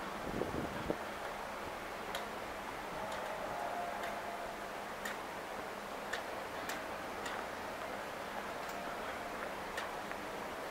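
Footsteps on tiled paving at a walking pace, a sharp click about every half second to second, over a steady background hiss of the city.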